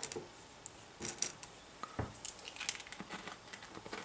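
A few faint clicks and crackles of hard sugar-coated candy eggs knocking together as a hand picks them out of a glass bowl, followed by soft crunching as one is bitten and chewed.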